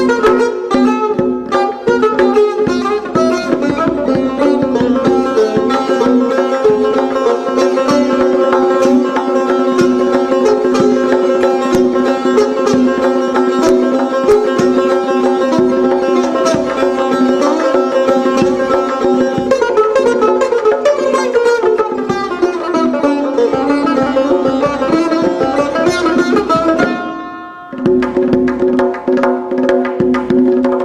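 Persian tar played solo with a plectrum in the Mokhalef-e Segah mode: quick runs of plucked notes over sustained ringing pitches. It breaks off for a moment near the end, then goes on.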